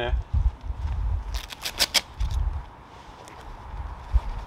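Tactical gear being handled on a ground tarp: rustling, with a short run of sharp clicks about a second and a half in, over low wind rumble on the microphone.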